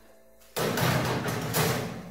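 A metal baking pan pushed onto a wire oven rack: a sudden scraping, clattering metal sound starting about half a second in and lasting about a second and a half.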